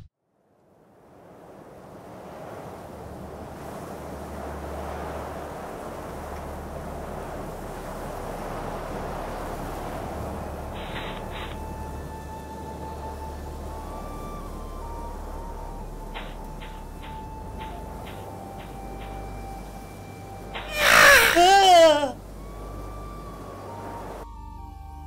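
Eerie ambient soundtrack: a soft hiss-like drone swells in with faint held tones and a few brief runs of clicks. About 21 seconds in, a loud wavering cry falls in pitch for about a second and a half.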